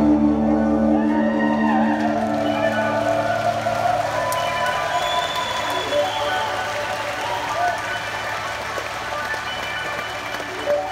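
Live rock band's amplified guitars and synths holding a sustained chord. The deep bass drops out about a second in and the remaining held tones ring on, while audience applause and voices rise underneath.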